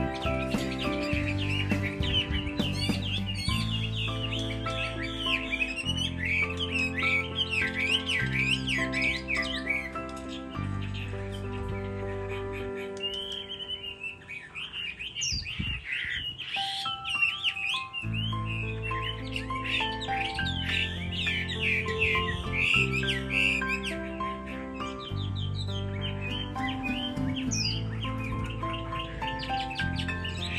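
A caged Chinese hwamei sings long, unbroken runs of rapid, varied whistles and trills, over background music of sustained low chords. The bird is in moult.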